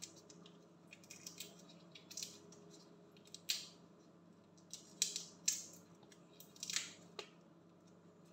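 Raw shrimp being peeled by hands in thin plastic gloves: short, irregular crackles and rustles of shell and glove, about a dozen spread through the few seconds, with the sharpest ones in the second half.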